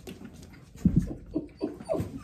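Four-week-old Australian Labradoodle puppy whimpering: about four short squeaks that each fall in pitch, coming in the second half, with low bumps of the puppy being handled.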